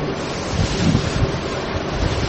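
A steady rushing noise with no clear tones, the recording's background noise heard in a pause between spoken phrases.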